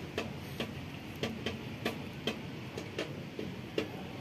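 A cat eating rice from a foam takeaway tray: irregular clicks of chewing and mouthing the food, two or three a second, over a steady background hiss.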